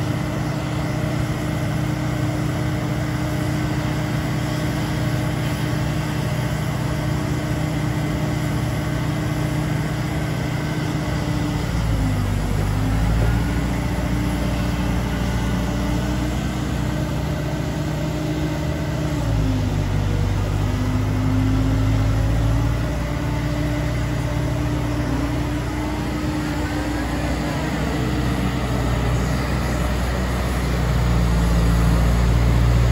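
Liebherr A924C Litronic wheeled material handler's diesel engine running steadily while its hydraulics work the boom, raise the cab and slew the machine. About a third of the way in the sound grows heavier in the low end, and the engine note dips briefly three times as the hydraulics take load.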